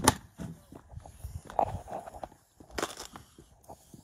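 Footsteps on paving, with a few sharp knocks: a loud one at the very start and another just under three seconds in.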